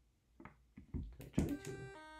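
A few small clicks and knocks of alligator clips being handled. About one and a half seconds in, a micro:bit's programmed tune starts faintly through a Bluetooth speaker as steady notes at several pitches: the speaker's volume is turned way too low.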